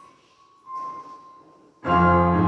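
A hushed pause with a faint steady high tone and a short breathy hiss about two thirds of a second in, then a mixed choir comes in loudly on a full sustained chord near the end.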